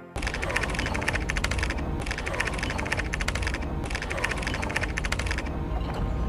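A typing sound effect: rapid key clicks in three bursts of about a second and a half each, over a low music bed.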